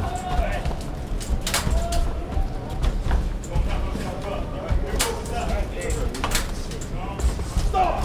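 Voices shouting over the rumble of an arena crowd during a boxing bout, with sharp smacks scattered through, the sound of gloved punches landing.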